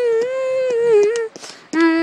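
A voice humming or singing long held notes: one high sustained note that breaks off about a second in, then a lower held note starting just before the end.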